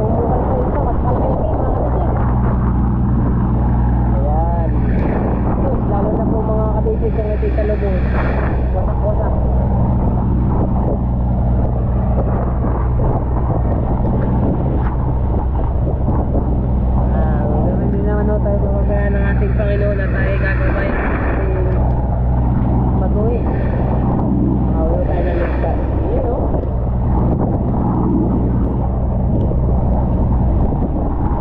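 Outrigger fishing boat's engine running steadily under the rush and splash of rough, breaking sea. Voices call out over it several times, briefly near the start and again through the second half.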